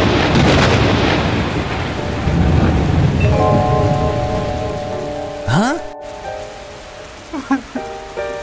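Thunderclap and heavy rain sound effect: a loud crash that rumbles and fades over several seconds under the rain. Soft music comes in about three seconds in, with a short rising glide a couple of seconds later.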